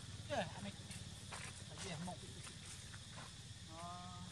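Macaque calls: a sharp squeal falling in pitch about a third of a second in, a short call near two seconds, and a brief steady-pitched coo near the end. These play over a steady low hum and a faint high insect-like drone.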